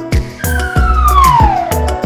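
Upbeat children's background music with a steady beat, over which a whistle-like cartoon sound effect slides down in pitch for about a second and a half.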